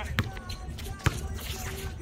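Basketball being dribbled on an outdoor hard court: two sharp bounces a little under a second apart.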